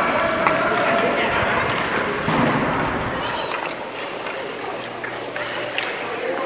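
Indistinct chatter of young hockey players over a steady scrape and hiss of skate blades on the ice of an indoor rink.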